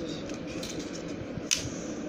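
Faint handling of small plastic parts: light scattered ticks over a steady low hiss, with one sharper click about one and a half seconds in.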